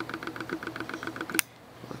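Camera autofocus motor running in the camera's own microphone. It makes a rapid, even ticking at about ten ticks a second, then stops with one sharp click about one and a half seconds in.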